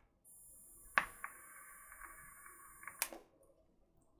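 Vape mod's fire button clicking, then about two seconds of the coil sizzling as air is drawn through the tank, with a faint high whine, ended by a second click as the button is released.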